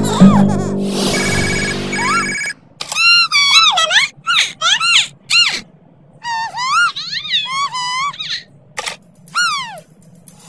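A telephone ringing in two trilling bursts over a low held music chord, then high-pitched, swooping cartoon character voices in short phrases.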